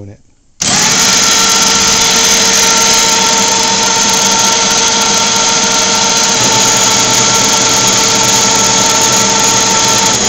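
Baum 714XLT paper folder with its 8-page right-angle unit switched on: its motors start suddenly about half a second in and run loudly and steadily, a whine over a hiss.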